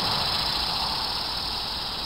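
Steady hiss-like background noise with no distinct tone or rhythm, easing slightly.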